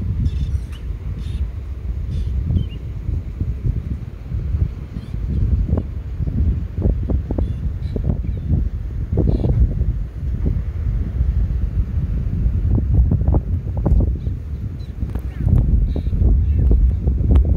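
Wind buffeting the camera microphone: a steady low rumble with gusty swells and thumps.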